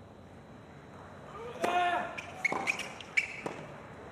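Tennis play on a hard court: several sharp knocks of the ball bouncing and being struck, mixed with short pitched squeaks of shoes on the court surface, starting about a second and a half in.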